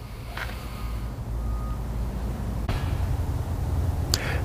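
Truck engine idling: a steady low rumble that grows slowly louder, with a faint click about two and a half seconds in.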